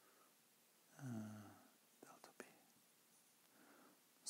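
Near silence, broken by a man's short, faint hum about a second in, then a few faint clicks of a marker against a whiteboard.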